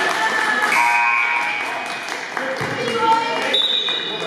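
Basketball game sounds in a gym: a basketball bouncing on the hardwood court amid voices calling out and short high squeaks.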